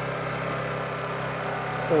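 Electric steering motors of the WEEDINATOR autonomous tractor running steadily with a horn-like twin-tone hum. The two tones come from one wheel driving faster than the other as it steers, the wheels assisting the steering.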